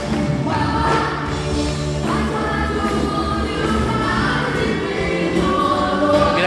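Live pop music played on stage by a band, with several voices singing long held notes together, heard from among the standing audience in the hall.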